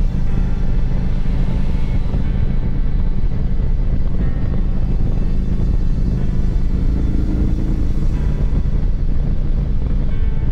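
Motorcycle engine running steadily at a light cruise, with road and wind noise over it.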